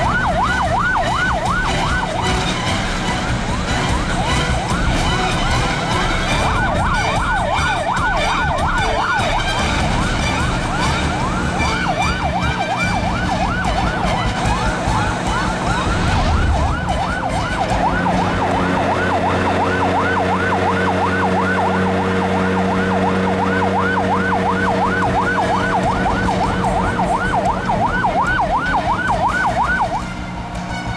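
Police patrol boat siren sounding a fast rising-and-falling wail, about three sweeps a second, over a low rumble of boat engines. Steady low tones join in from a little past halfway.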